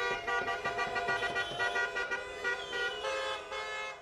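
Balkan brass band of trumpets (trubači) playing a tune, several horns sounding together in held notes that step from pitch to pitch, getting quieter near the end.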